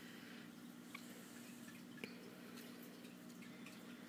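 Near silence: room tone with a faint steady low hum and two faint ticks, about one and two seconds in.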